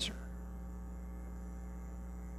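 Steady low electrical mains hum, a constant drone with no change in pitch.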